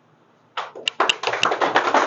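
A small audience clapping: many hands at once, starting about half a second in.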